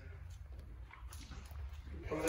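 Quiet lull: a low steady hum with a few faint, short knocks.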